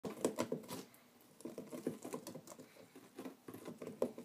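Rabbits chewing a grass house made of pressed dried grass: irregular runs of quick, crisp crunching clicks, with a short lull about a second in.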